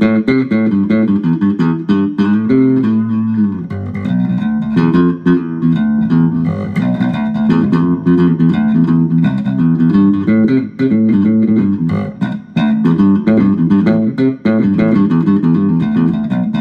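Squier Vintage Modified Jaguar Bass Special SS short-scale electric bass played through a small guitar amp: a continuous run of plucked bass licks, the notes changing several times a second.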